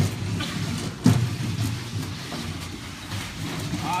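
Weighted training sled dragged by straps across a concrete floor, a steady low scraping rumble with a sharp knock about a second in.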